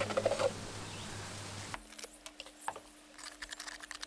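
Wet stone fix (reef rock cement) being stirred and scraped by hand in a plastic tub. It starts about two seconds in as a run of small, irregular clicks and scrapes, after a stretch of steady low hum.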